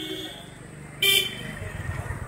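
A vehicle horn toots briefly and loudly about a second in, after a fainter horn-like tone at the start, and a vehicle engine then runs with a low, pulsing rumble.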